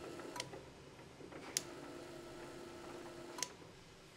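Tubular curtain motor, driven from the smart-switch app, starting with a sharp click, running with a faint steady hum for nearly two seconds, then stopping with another click. A smaller click comes just before.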